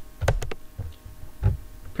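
A few clicks of a computer keyboard and mouse, each a sharp click with a dull thump under it: two close together about a quarter second in, one soon after, and another at about a second and a half. A low steady hum runs underneath.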